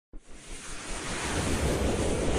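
A swelling whoosh sound effect of a logo intro: a noisy rush that starts just after the opening and builds steadily in loudness, with a low rumble underneath.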